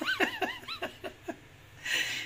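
Hard, high-pitched laughter: a quick run of short squealing whoops over the first second or so, then dying away.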